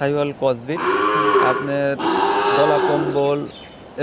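Cow mooing twice, two long, loud calls of about a second each, the first starting under a second in and the second about two seconds in.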